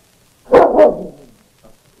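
A dog barks twice in quick succession about half a second in, a reply to being spoken to.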